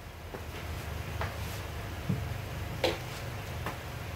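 A few light clicks and taps, the loudest about three seconds in, from handling an acoustic guitar's string and bridge pin during restringing, over a steady low hum.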